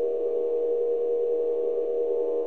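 Steady ambient drone from Sonic Pi: a sampled sound played backwards at slowed speed, a dense cluster of held mid-pitched tones with no beat.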